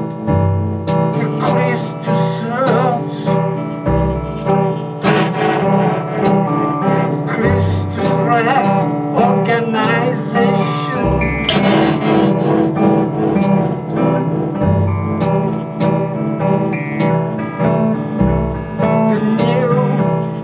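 A band playing live in a small rehearsal room: a guitar through an amplifier over a steady pulsing low part, with a deep bass note returning about every three and a half seconds.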